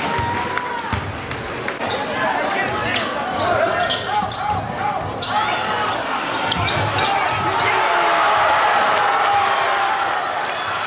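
Live basketball game sound in a gymnasium: a ball bouncing and sharp knocks on the court under a crowd's voices and shouts, which grow louder over the last couple of seconds.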